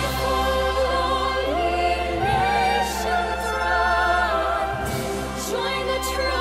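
Female voices and a choir singing long held notes with vibrato over an orchestra.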